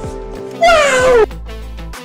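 A single loud, meow-like wailing cry that falls in pitch, lasting about half a second, over background music with a steady bass; quieter music carries on after it.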